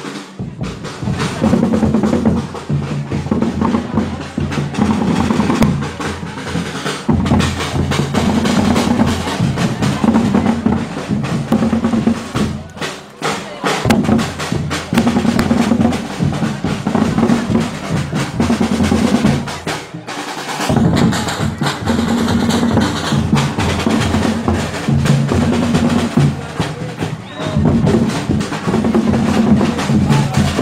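School marching band playing: bass drums and snare drums beating with drum rolls under sustained brass notes, dropping back briefly twice.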